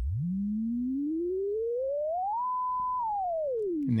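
Pure sine tone from a software tone generator, its pitch following a simulated engine-RPM input. It glides steadily up from a low hum to about 1 kHz, the top of its frequency curve, holds there for about half a second, then slides back down.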